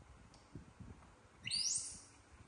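A young macaque gives one short, high-pitched squeal that rises in pitch, about one and a half seconds in. Faint low knocks from fruit being handled and sliced sit underneath.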